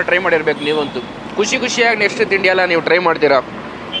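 A man speaking in two stretches, with a short pause about a second in, over low background noise.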